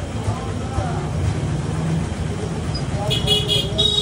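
Street traffic: a low engine rumble and voices, then a vehicle horn beeping in several short, high-pitched toots about three seconds in, with one more near the end.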